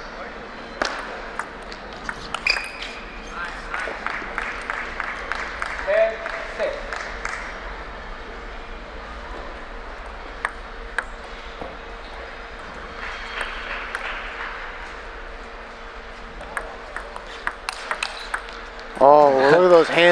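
Table tennis ball clicking sharply off the table and the players' rubber-faced paddles in quick exchanges: one rally in the first few seconds, a pause, then a faster rally near the end. Under it runs a steady murmur of voices in a large hall.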